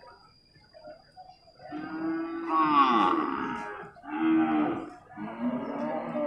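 Water buffalo lowing: three long calls one after another starting a little under two seconds in, the first the loudest, its pitch falling.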